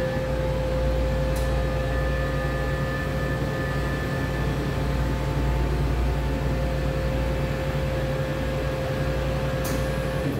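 Chamber vacuum sealer running its vacuum pump, a steady hum with a held tone. A click about a second and a half in and another near the end.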